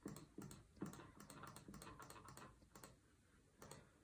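Faint, irregular clicking on a laptop while a web CAPTCHA is being solved: about a dozen short clicks over the first three seconds, then a couple more near the end.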